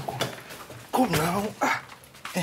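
A man's voice beckoning in short calls of "come, come, come".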